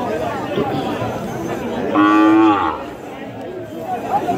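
A cow moos once, a short call of under a second about halfway through, its pitch dropping a little at the end, over the steady chatter of a crowd.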